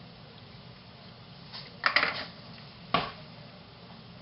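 Kitchenware clattering: a quick cluster of knocks and clinks about two seconds in, then one sharp knock about a second later, over a steady low background hum.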